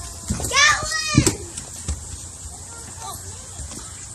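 A young child making high-pitched wordless vocal sounds: two squeals about half a second in, each rising then falling in pitch, then a few softer ones later, with light knocks.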